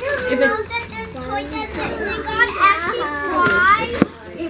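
Young children chattering in high-pitched, excited voices, with the loudest calls rising in pitch near the end.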